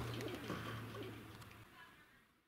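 Faint outdoor background sound fading away as the camera recording is paused, with a steady low hum that stops about one and a half seconds in.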